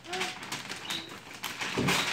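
Wrapping paper tearing and rustling as a gift box is unwrapped, loudest near the end. Two brief low tones of unclear source sound near the start and about a second in.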